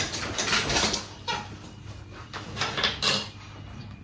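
A man chewing a whole klepon (a glutinous rice ball) in one mouthful: a few short, noisy mouth sounds.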